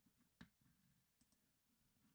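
Near silence with a few faint computer clicks: one sharp click about half a second in and two fainter ones a little after a second.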